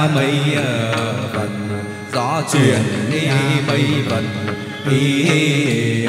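Chầu văn ritual music: a singer's wavering, ornamented vocal line over steady instrumental accompaniment.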